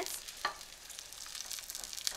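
Thinly sliced garlic sizzling quietly in olive oil in a stainless steel pan, stirred with a wooden spoon that scrapes across the pan, with a light tap about half a second in.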